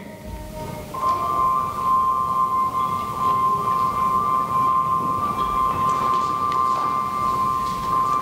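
A steady, high, bell-like tone of two close pitches sets in about a second in and holds unchanged, over a low murmur of the room.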